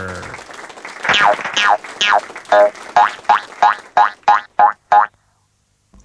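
A string of springy cartoon 'boing' sound effects that come quicker and shorter as they go, then stop abruptly about five seconds in.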